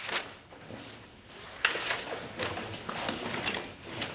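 Scattered rustling and handling noises with a sharp click about one and a half seconds in, followed by a few softer clicks.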